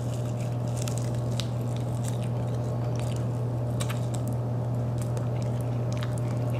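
A person biting into and chewing a sauced bone-in chicken wing close to the microphone, with wet mouth sounds and small clicks scattered through it. A steady low hum runs underneath.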